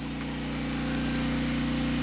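A generator engine running steadily, a low even hum that grows a little louder over the first second.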